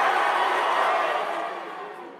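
Crowd applause, dying away over the last second.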